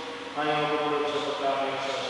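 A priest chanting a prayer of the Mass: a single man's voice intoning on long, held notes.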